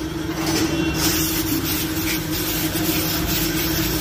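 Aerosol chain-cleaner spray hissing in a steady jet from about a second in, sprayed onto a greasy clutch pin to clean it. A steady low hum sits underneath.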